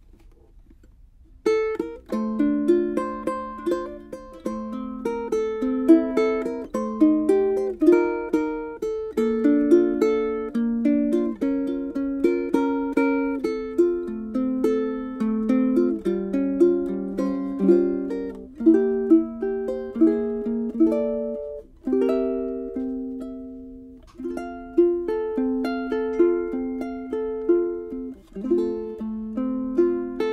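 An acoustic ukulele fitted with a plastic saddle, played solo with picked chords and melody notes. The playing begins about a second and a half in and carries on with a brief pause about two-thirds of the way through.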